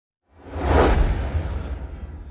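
Whoosh sound effect over a deep rumble, swelling in about half a second in, peaking shortly after and then fading away slowly.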